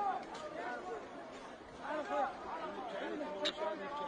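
Indistinct voices of people talking quietly, with a faint click about three and a half seconds in.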